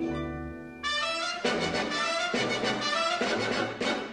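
Orchestral film-score music. Held low notes open it, then about a second in the full orchestra comes in loudly with brass and carries on with rhythmic accents.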